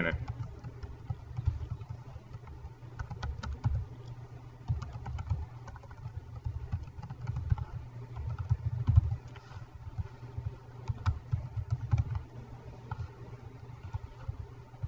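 Computer keyboard being typed on in short irregular runs of key clicks, over a steady low hum with a few low thumps.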